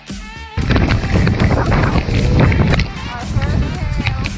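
Background music with voices, joined about half a second in by a loud, steady rushing noise that stays to the end.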